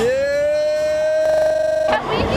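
A young man's long yell of "Yeah!". It rises in pitch at the start, holds one note for nearly two seconds, wavers near the end and cuts off suddenly.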